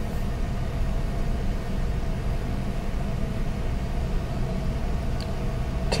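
Car engine idling steadily while still cold, heard inside the cabin as a low, even rumble with a faint steady hum above it.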